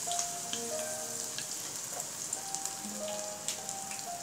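Batter-coated Bombay duck (loitta) fillets deep-frying in hot oil in a pan: steady sizzling with many small pops and crackles.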